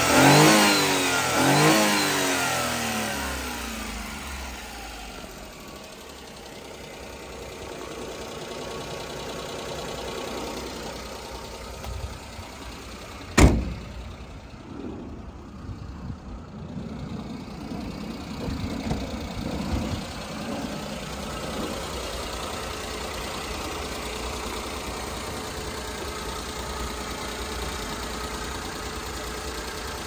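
1996 Daihatsu Hijet Climber's three-cylinder engine revved a few times, then falling back and running at a steady idle. A single sharp knock about 13 seconds in.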